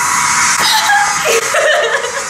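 A K-pop dance track playing from a stage performance video, with high-pitched squealing and laughter over it.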